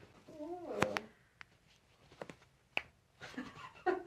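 A woman's high, gliding giggle muffled behind her hands about half a second in, then a sharp crack near one second and a few fainter pops from her toe joints as the chiropractor lifts her toes, with a soft breathy laugh near the end.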